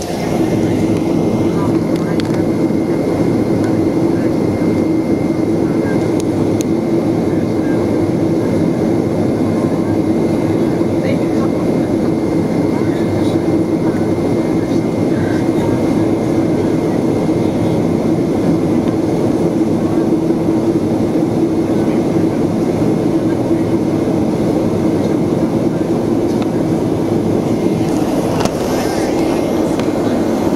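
Airplane engine drone heard from inside the cabin, loud and steady, with a constant hum running under it.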